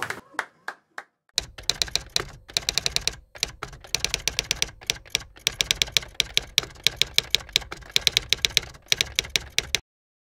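Typewriter keys clacking as a sound effect to text being typed onto the screen: a few sparse strokes at first, then fast irregular runs of keystrokes. It stops abruptly just before the end.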